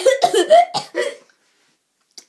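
A girl coughing, a quick run of several short voiced coughs over about the first second.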